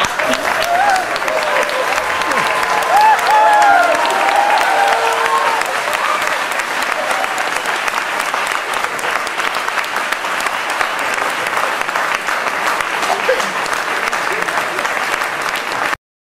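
Audience applauding, with voices calling out over the clapping during the first several seconds.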